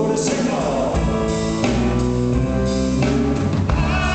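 Live rock and roll band playing, with guitar, bass and drum kit over sustained chords that change a couple of times.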